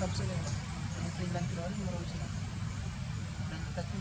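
Faint voices over a steady low rumble, with one sharp click right at the start.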